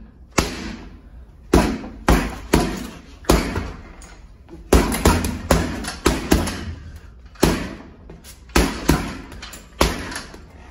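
Boxing gloves punching a heavy bag: about sixteen sharp thuds, some single and some in quick combinations of two or three, each trailing off briefly.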